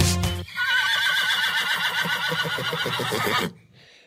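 A horse whinnying: one long, wavering neigh of about three seconds that follows the last note of a short musical jingle and then cuts off.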